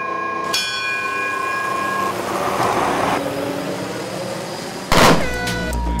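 A polished ceremonial bell is struck once about half a second in and rings for about a second and a half before fading. Near the end a sudden loud bang cuts in, followed by falling tones.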